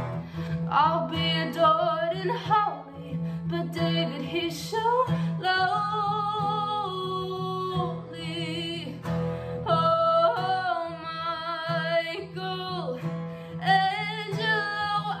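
A young woman singing a slow song to her own Simon & Patrick acoustic guitar, holding long notes that waver with vibrato.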